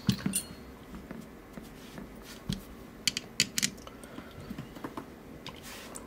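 Scattered light clicks and taps of a brass mortise lock cylinder and a screwdriver being handled, with a quick cluster of clicks around the middle and a few more near the end.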